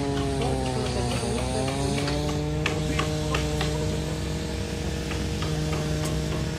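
Building-site noise: a machine engine droning steadily with a slight dip in pitch, and from about two seconds in a run of sharp knocks from carpenters working on the timber house frames.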